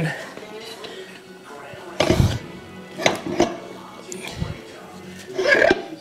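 Heavy torque converter being slid onto a C4 automatic transmission's input shaft: a loud clunk about two seconds in, then a few softer knocks and scrapes of metal against the shaft and bellhousing.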